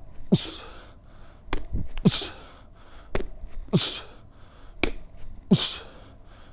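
Medicine ball slapping into the hands on each catch, each followed by a sharp hissing exhale with a short grunt falling in pitch as it is thrown back. The slap and breath repeat about every second and a half to two seconds, with four breaths in all.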